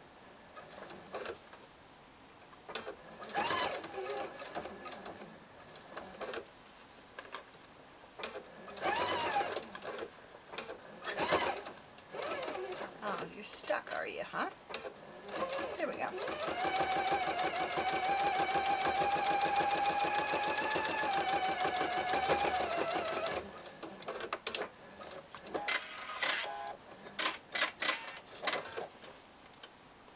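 Electric sewing machine stitching: a few short runs that speed up and slow down, then one steady run of about eight seconds. A few short clicks follow near the end.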